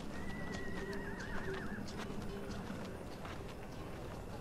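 A horse whinnying once in a wavering high call that lasts about a second and a half, over scattered hoof clip-clops and a faint low hum.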